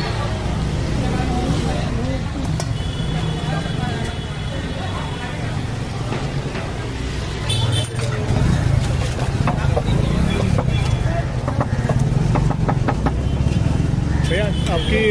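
Busy street ambience: a steady low rumble of traffic with background voices. About eight seconds in, a run of light clinks and taps of steel spoons against steel bowls and pots.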